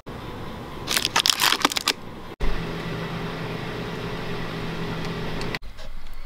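A short run of crinkling and clatter, then, after a cut, a steady car-cabin drone of engine and road noise with a low hum, lasting about three seconds.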